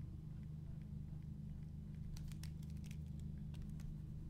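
Stylus of a Wacom Intuos Pro tablet tapping and scratching on the tablet's surface while drawing: a scatter of faint clicks, most of them between two and three seconds in, over a steady low hum.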